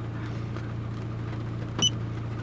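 A steady low hum inside a parked car's cabin, with one short click and beep about two seconds in as a button is pressed on a handheld OBD2 scan tool.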